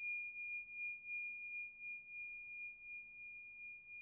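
Tingsha cymbals ringing out from a single strike made just before, one high clear tone that wavers in a slow pulse as it slowly fades. A fainter, higher overtone dies away about two and a half seconds in.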